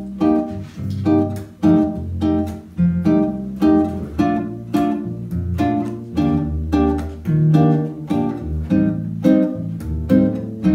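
Nylon-string classical guitar playing bossa nova: plucked chords over low bass notes in a steady rhythm.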